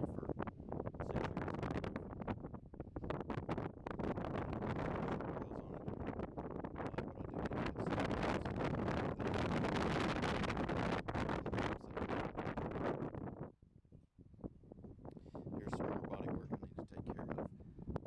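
Wind buffeting a phone's microphone in uneven gusts, with a short lull about two-thirds of the way through.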